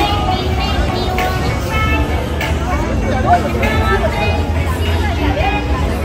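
Busy nightlife street: loud music from bars with heavy bass, under the voices and chatter of a crowd.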